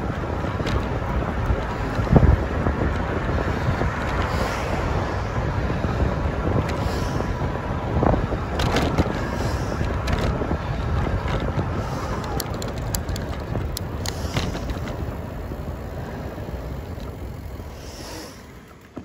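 Wind buffeting the microphone of a camera on a moving electric-assist bicycle, mixed with tyre and road noise. There is a thump about two seconds in and a few clicks and knocks later on. The noise dies down near the end as the bike slows for a red light.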